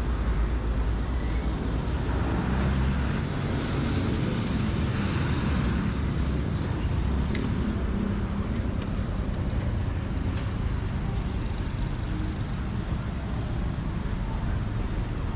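Street traffic: the engines of jeepneys, trucks and motorcycles running in a busy lane, with a swell of louder noise about four to six seconds in.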